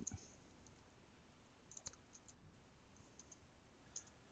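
A few faint computer keyboard keystrokes typing a terminal command, scattered from a little under two seconds in to the end, over near silence.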